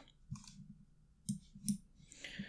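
Three faint, short clicks from computer input while using a PC: one about a third of a second in, then two close together past the middle.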